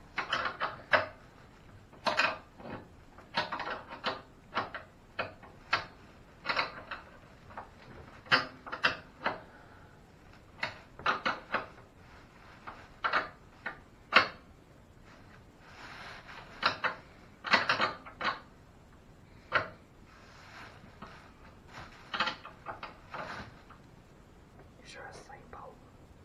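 Irregular clicks, knocks and rattles of bolts, nuts and metal parts being handled while a portable generator's steel frame is assembled by hand.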